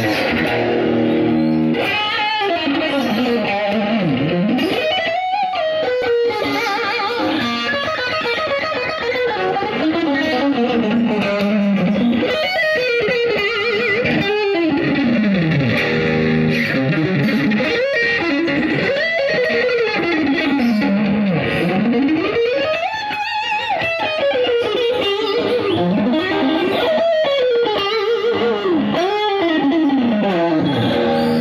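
Fender Stratocaster electric guitar played through a Peavey amplifier in fast lead runs whose pitch climbs and falls over and over, with no break.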